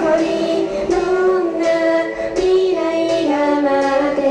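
A female idol singer singing live into a handheld microphone over the song's backing track, with a guitar-band accompaniment. The heavy bass drops away just as the sung line begins, leaving the voice out front.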